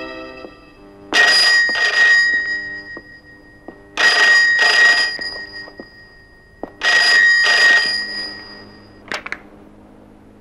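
A desk telephone's bell ringing three times, about three seconds apart, each ring a quick double burst.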